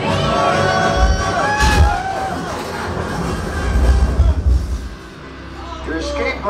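A theme-park dark ride's soundtrack music with deep rumbling. Riders cheer and whoop over it in the first couple of seconds.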